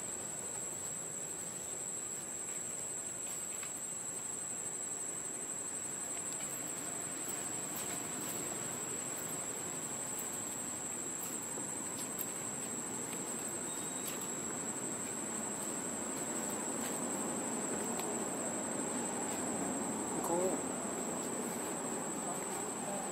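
Steady high-pitched insect buzz, one unbroken tone, over a grainy background hiss; a short rising squeak sounds near the end.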